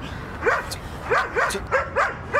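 Large shepherd-type dog barking, about five short barks in quick succession.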